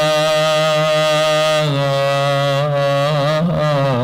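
A man's voice chanting into a microphone in long, drawn-out held notes with small ornamental wavers, stepping down to a slightly lower note about a second and a half in.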